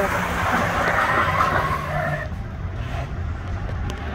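Dodge Dakota pickup running hard with tyres scrubbing on the pavement after a burnout, a rough hiss over the engine's low rumble. The hiss stops about halfway through, leaving the engine rumble.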